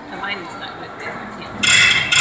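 A loud rasping, rattling noise breaks in suddenly near the end, after faint, indistinct sounds.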